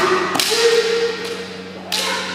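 Kendo bout: two sharp cracks of bamboo shinai strikes, about a second and a half apart, with a held kiai shout between them.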